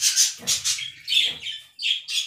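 Quail giving short, repeated high chirping calls, about four in two seconds, with some handling noise. The bird is being held down for eye drops and is upset by the restraint.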